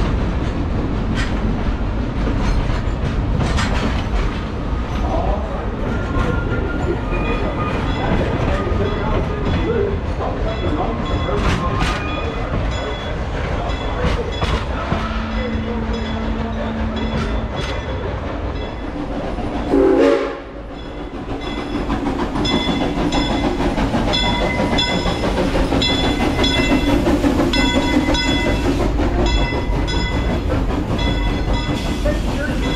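Narrow-gauge steam train running, with a constant rumble and its wheels clicking over the rail joints. A steady low tone sounds for a couple of seconds about halfway through, and a short loud burst comes about two-thirds of the way in.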